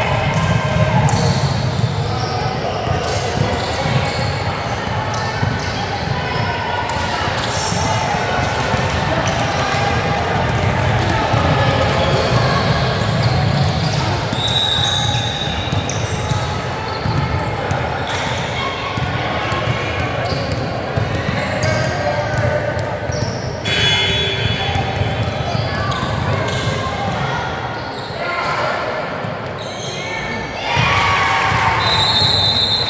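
Youth basketball game on a hardwood gym court: a ball bouncing, players' and spectators' voices, and scattered thuds and shoe noises. Everything echoes in the large hall.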